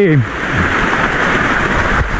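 Water from a small cascade and stream running down a rock wall beside the path: a steady, even splashing rush.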